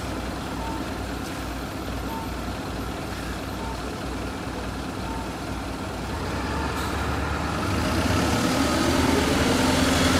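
Isuzu Erga city bus idling, with short beeps about once a second. In the second half its engine revs up, rising in pitch and getting louder as the bus pulls away.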